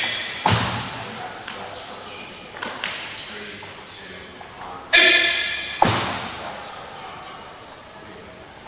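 A sharp thud about half a second in, then a loud held shout near five seconds, followed at once by another sharp thud. Each thud rings on in a large, echoing hall.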